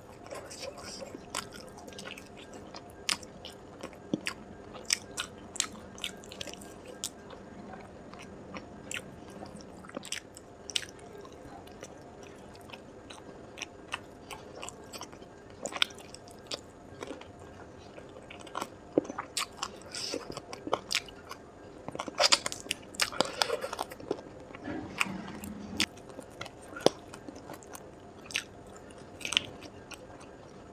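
Close-miked chewing and biting into spiced chicken drumsticks, with many sharp, wet mouth clicks. A denser, louder stretch of chewing comes a little past two-thirds of the way through.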